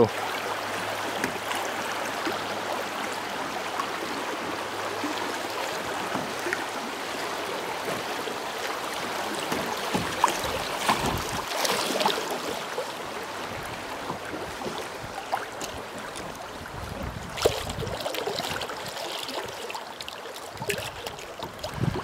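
Creek water rushing over shallow riffles around a kayak, a steady hiss, with a few short knocks partway through.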